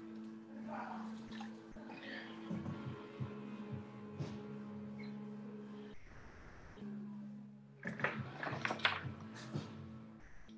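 Electric pottery wheel humming steadily while wet clay is worked by hand, with soft wet handling and splashing sounds that come thicker near the end. The hum cuts out briefly about six seconds in.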